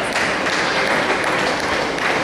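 Clapping over the murmur of a crowd in a large hall, a dense steady patter.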